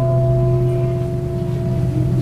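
A struck Buddhist temple bowl bell ringing on, a low hum with a few higher tones above it, slowly fading away.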